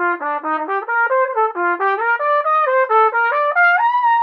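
Solo silver trumpet playing a quick scale-like run of separate notes that step up and down, climbing higher near the end.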